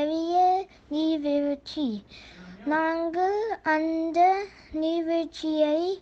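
A young child's high voice in sing-song, drawn-out pitched syllables, with short pauses between phrases.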